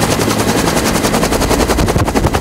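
Huey-type helicopter flying low overhead, its two-blade main rotor beating a loud, rapid and even chop.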